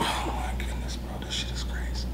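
A man sighing: one breathy exhale near the start, then faint breath sounds over a steady low hum.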